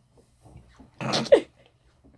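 A woman's voice in one short, breathy burst about a second in: a laughing "three", its pitch falling away.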